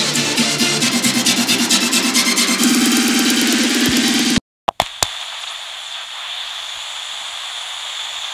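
Background electronic music with a steady beat cuts off abruptly about four seconds in. After two quick clicks, a steady hiss of TV static follows.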